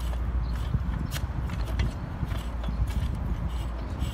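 Irregular light metallic clicks and scrapes from the sections of a BQ double-tube core barrel being turned by hand at a threaded joint, over a steady low rumble.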